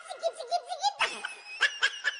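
Children laughing in quick repeated bursts, louder about a second in.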